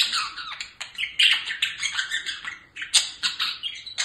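Budgerigar chattering and warbling: a fast, unbroken run of clicks and squeaky chirps, with a few sharper clicks mixed in.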